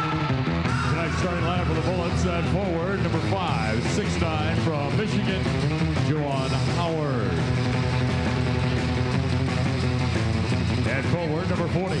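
Arena music playing under the public-address announcer's voice as he calls out the visiting team's starting lineup, stretching the syllables out long.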